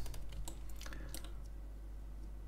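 Computer keyboard keys clicking: a handful of quick key presses in the first second or so, over a steady low hum.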